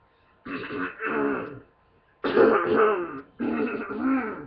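A young person's voiced coughing and throat clearing in three drawn-out bouts of about a second each, the first starting about half a second in.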